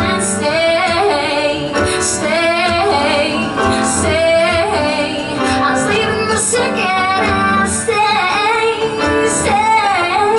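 A woman singing live into a microphone, accompanied by her own strummed acoustic guitar, in held, rising and falling phrases.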